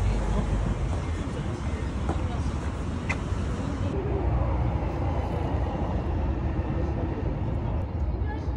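Outdoor city ambience: a steady low rumble of road traffic with faint background voices.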